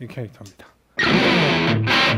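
Electric guitar played through a Dawner Prince Electronics Diktator distortion pedal set for its full-gain sound, starting about a second in with a heavy riff built on repeated low notes.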